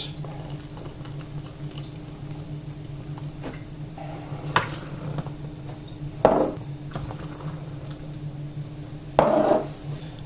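Glass beer bottle and plastic funnel being handled while beer is poured into a plastic bottle: a sharp clink about four and a half seconds in, a heavier knock a couple of seconds later as the bottle is set down, and a short rattle near the end, over a steady low hum.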